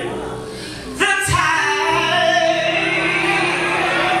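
A woman singing gospel live into a microphone in a large hall, with musical accompaniment. About a second in her voice comes in louder with a rising note, then holds long sustained notes.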